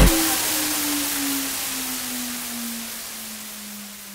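Fade-out tail of a trance-style DJ remix: the beat cuts off right at the start, leaving a hissing noise wash and a single low tone that slides slowly downward, both fading away.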